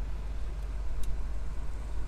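Steady low rumble inside the cabin of a stationary GMC Sierra 1500 pickup, with a single light click about a second in.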